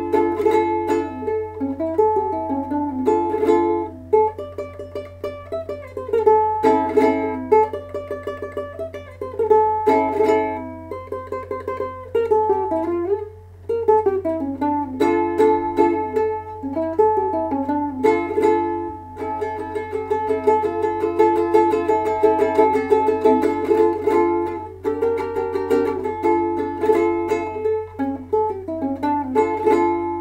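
Ukulele playing a flamenco farruca: rapid strummed flurries alternate with descending runs of single notes, the tempo pushed faster near the end before a last chord rings out. A faint steady low hum sits underneath.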